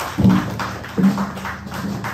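Small live band playing on a club stage: upright bass, drum kit and electric guitars. Two strong low bass notes sound about a second apart over light drum and cymbal strokes.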